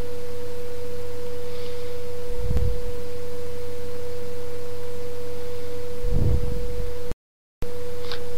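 A steady, unwavering tone just under 500 Hz over a low electrical hum, the kind of interference whine picked up by a recording setup. It cuts out completely for about half a second near the end, then resumes.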